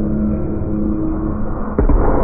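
Live electronic music played loud through a festival sound system and heard from the crowd: a held low note over deep bass, then a sudden hard hit near the end as a louder, heavier part begins.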